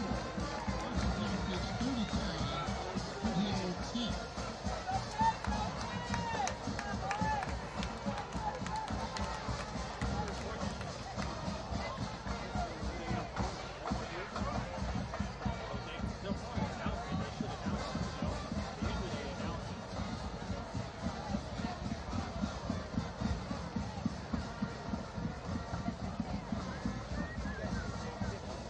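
Football stadium crowd noise: many voices calling and cheering, loudest in the first few seconds, with music playing underneath throughout.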